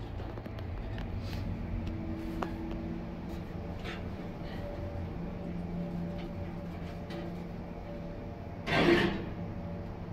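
Hydraulic elevator cab in motion: a steady low hum of the drive with faint steady tones. About nine seconds in, one short, loud thump stands out above it.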